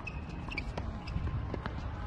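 Outdoor ambience: a steady low rumble with a few faint, scattered knocks and a brief high tone just after the start.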